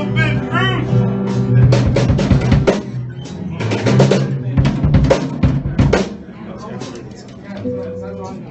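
Live acoustic guitar and drum kit playing together, with a run of loud drum hits through the middle, the music dropping quieter over the last two seconds.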